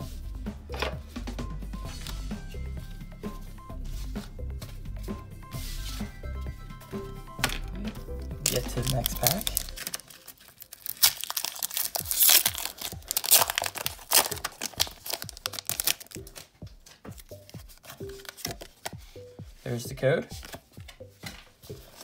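Foil booster-pack wrapper being torn open and crinkled by hand, a dense crackling spell from about ten seconds in that lasts several seconds.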